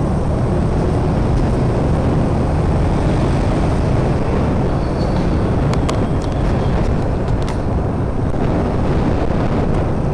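Steady low rumble of riding a motor scooter through city traffic: the scooter's engine with road and wind noise and the motorbikes around it. A few brief clicks a little past the middle.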